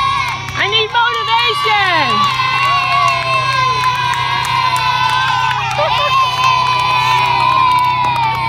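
A group of young schoolchildren cheering and shouting together, many voices overlapping in squeals and whoops, with a high held shout running through most of it.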